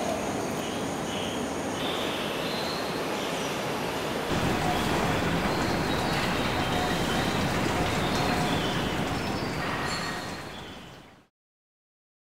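Steady rushing ambient noise with faint short high chirps, getting a little louder about a third of the way in, then fading out to silence near the end.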